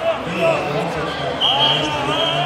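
Several voices talking and calling out at once, echoing in a large sports hall, with a brief high steady tone starting about three-quarters of the way through.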